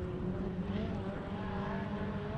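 Rallycross car engine running at speed, heard from trackside: a steady engine note with a slight waver in pitch around the middle.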